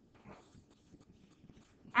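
Near silence: faint room noise with a few soft, brief sounds.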